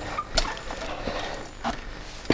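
Mountain bike riding slowly along a narrow wooden plank, the tyres rolling on the boards, with two sharp knocks and rattles from the bike: one about half a second in and one near the end.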